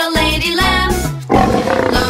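Children's song with a sung melody over a bouncy backing track, broken about a second and a half in by a short roar-like burst, a cartoon lion's roar.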